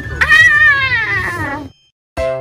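A cat's meow: one long call that rises briefly and then slides down in pitch, cutting off abruptly shortly before the end.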